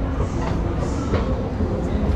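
Escalator running, heard from on it: a steady low rumble with faint hall noise over it.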